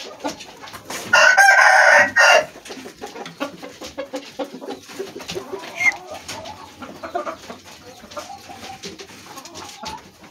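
Rooster crowing once: a loud, pitched crow starting about a second in and lasting just over a second, followed by only faint, quieter sounds.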